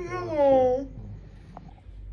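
A single drawn-out vocal call, falling in pitch over about a second and then stopping.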